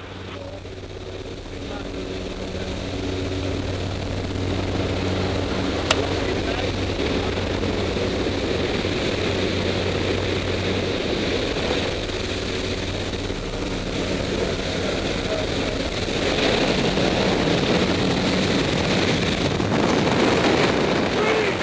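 Steady drone of a propeller jump plane heard from inside the cabin, with a loud rush of air. The rush grows louder in the last few seconds as the skydivers exit the plane.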